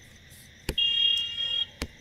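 A click, then a steady high-pitched electronic beep lasting just under a second, then another click.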